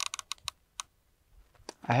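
Riflescope elevation turret clicking through its detents as it is dialed up for a 600-yard shot, 4.2 mils of elevation. A quick run of clicks slows and stops within the first second.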